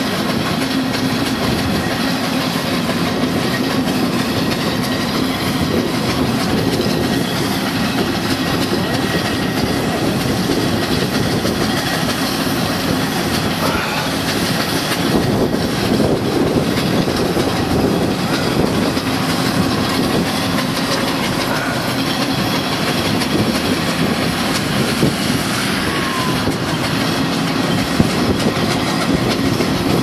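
Steam traction engines running as they haul a heavy load along a road, with cars passing close by.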